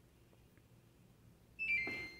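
Samsung top-load washing machine's control panel sounding a short electronic chime about a second and a half in, a few tones stepping down in pitch. It comes as two panel buttons held together are released, the confirmation of the child lock being switched off.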